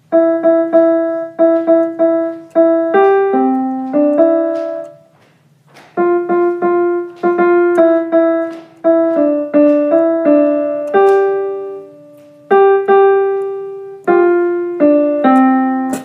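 Piano played as a simple melody of single struck notes, many of them repeated, in short phrases. Two brief pauses fall about five seconds in and about twelve seconds in.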